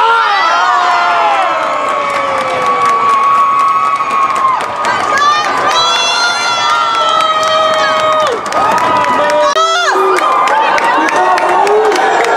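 Crowd in an ice rink cheering and screaming with long, high, held shrieks, with scattered sharp knocks: celebration of a championship-winning moment.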